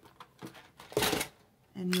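Clear plastic storage case of planner discs being handled and set down on a wooden table: a few light clicks, then one loud knock about a second in.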